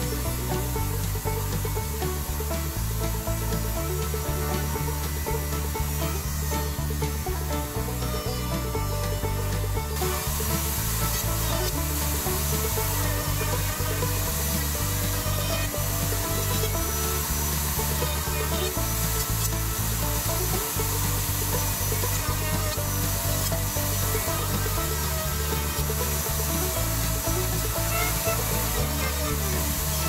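Router table running a chamfer bit as a wooden cabinet door's edges are fed past it, a steady cutting hiss that gets louder about a third of the way in. Background music with a stepping bass line plays throughout.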